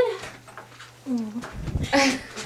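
Great horned owl flapping its large wings while held on a fist, giving a low whooshing buffet of wingbeats in the last half-second.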